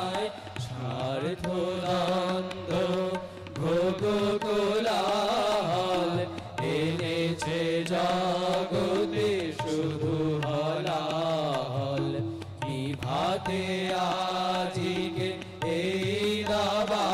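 A group of men singing an Indian devotional song together into microphones, with harmonium and tabla accompaniment; the held sung notes break briefly every few seconds for breaths between phrases.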